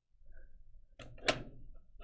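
Faint room tone with one short, sharp knock just past halfway, the sound of handling a plastic drone and game-style controller.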